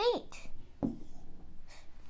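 Marker writing on a board, a few short strokes as a term is circled.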